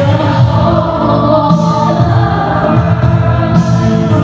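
Live worship music: a band with an electric guitar plays a steady, loud song while a group of voices sings together.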